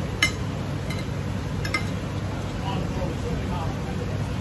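Metal cutlery clinking against a ceramic plate while eating, three light clinks in the first two seconds, the first the loudest, over a steady low background rumble.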